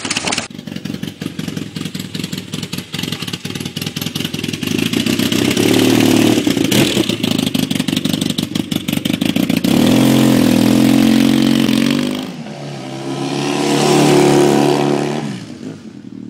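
1980 Kawasaki KZ750 parallel-twin engine running at a fast, even idle, then revving up as the motorcycle pulls away: the pitch climbs, drops briefly about twelve seconds in, climbs again, and fades as the bike rides off.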